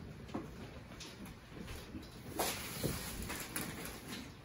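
Low household handling noise while people move among wrapped gifts: faint scattered rustles and knocks, with one louder, sharp brief noise a little past halfway.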